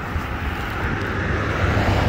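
Low rumble and hiss of a passing motor vehicle, growing louder toward the end.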